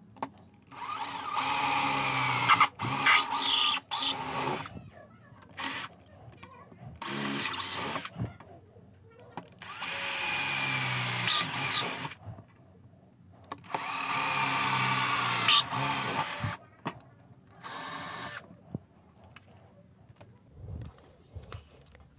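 Corded electric drill run in about six bursts of one to three seconds, boring mounting holes through a paper template into an amplifier case's base panel for the power-supply board's spacers. The motor's whine falls away at the end of each burst as the trigger is released.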